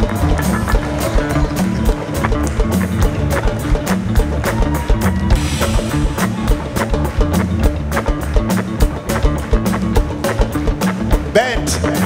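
A live band playing an instrumental groove without vocals: a drum kit keeps steady, evenly spaced hits over a walking bass line.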